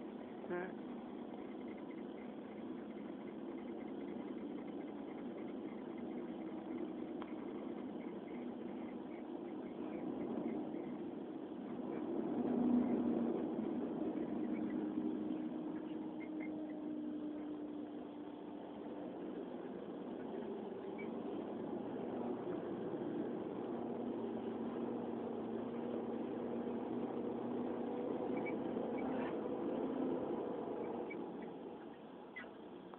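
Heavy Volvo truck diesel engines running steadily. The engine note swells about twelve seconds in, then drifts slowly in pitch.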